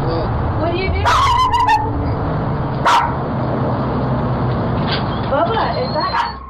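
Doorbell camera audio: a steady hum and hiss with a few brief calls, which may be voices or a dog. A single sharp click comes about three seconds in.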